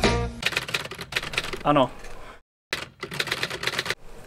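Typewriter keystroke sound effect: two quick runs of key clacks with a brief silent gap between them. A short sung "oh no" from the start of a song comes in about halfway through.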